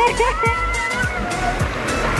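Water rushing down an enclosed water-slide tube, with background music over it.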